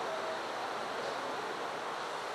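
Steady, even background hiss of room noise with no distinct events.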